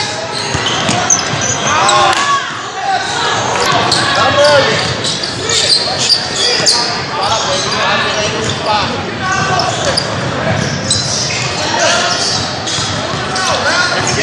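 Basketball game sounds on a hardwood gym floor: the ball bouncing, sneakers squeaking and voices calling out, all echoing in a large gym.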